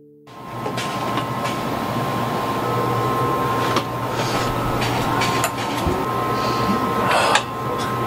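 Steady hum of running machinery with a high, even whine, broken by a few short clicks and knocks, the loudest a brief clatter near the end.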